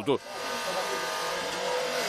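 Powered hydraulic rescue spreader running steadily, starting about a quarter second in, as its jaws force apart wrought-iron window bars.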